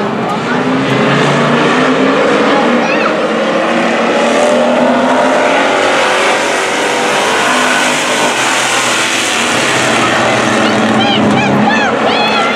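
A pack of street stock race cars running laps together, their engine note rising and falling steadily as they go around the track.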